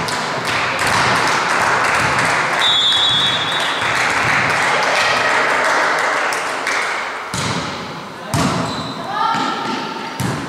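Players' and spectators' voices shouting and calling, echoing in a sports hall, with a short whistle blast about three seconds in. Near the end, two volleyball strikes come about a second apart, followed by shouts.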